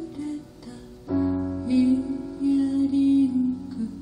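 Grand piano played live: a soft passage, then a full chord struck about a second in that rings on under a stepping melody.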